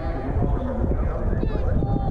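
Horse cantering on grass, its hoofbeats under a heavy low rumble of wind on the microphone, with a short high wavering call about one and a half seconds in.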